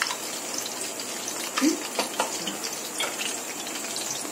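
Whole spices (cinnamon, bay leaf and cloves) sizzling steadily in hot oil in a wok, with scattered clicks of a wooden spatula scraping against the pan as they are stirred. This is the first frying of the whole spices in the oil to release their aroma.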